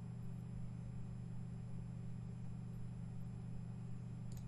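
Steady low electrical hum, unchanging, on the microphone audio line.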